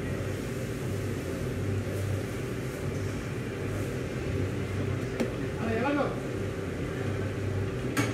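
Steady low machine hum with a steady higher tone over it, typical of indoor equipment such as fans or appliances; a voice speaks briefly in the background about six seconds in.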